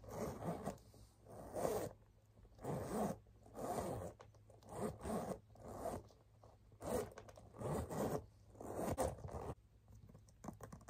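Zipper on a handbag being pulled back and forth, about nine quick zips roughly one a second.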